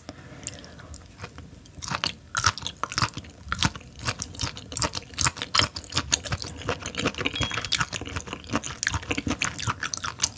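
Close-up mouth sounds of a person chewing raw sea cucumber sashimi: a dense, irregular run of short wet clicks, sparse at first and nearly continuous from about two seconds in.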